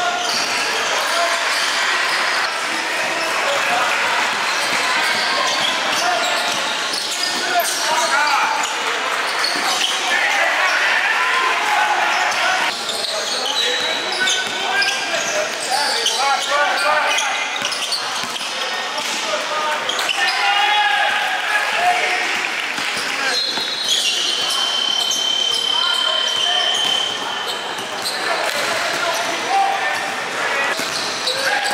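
Live indoor basketball game sound: a ball dribbling and bouncing on the court amid the talk and calls of players and spectators, echoing in a large gym. A high, steady tone sounds for about three seconds roughly three-quarters of the way through.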